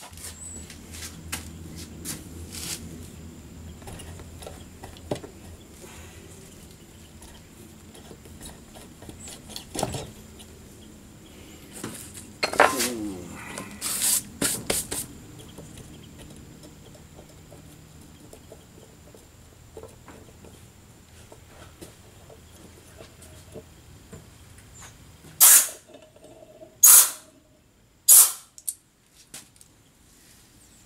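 Metal clanks and knocks of a Roosa Master rotary injection pump being worked apart by hand: a sharp clank with a short falling ring about halfway through, and three loud knocks in the last five seconds. A steady low hum runs underneath and cuts off suddenly near the end.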